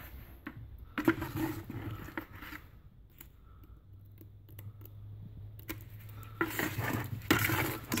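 Steel margin trowel stirring a runny cement slurry in a plastic bucket: scattered scrapes and clicks of metal against the bucket's plastic sides, busiest in the first couple of seconds and again near the end, quieter in between.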